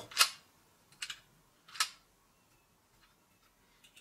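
Sharp metallic clicks from a Coteca hand rivet gun being worked in the hands: three clear ones in the first two seconds, then a few faint ticks near the end.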